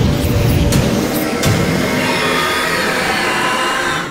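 Dramatic intro music and sound effects: a deep rumble under a dense wash of noise, with two short sharp hits about a second and a second and a half in.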